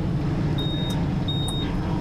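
Two short, high electronic beeps, well under a second apart, from the electric-converted Honda Wave as its compartment lock is worked. A steady low rumble of street traffic runs underneath.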